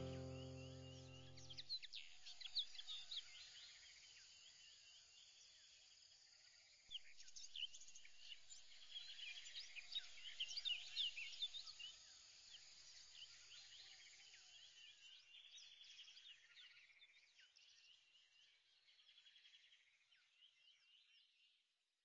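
Faint birdsong: many short chirps and whistles, busiest a third of the way in, thinning out and stopping just before the end. A music track dies away in the first two seconds.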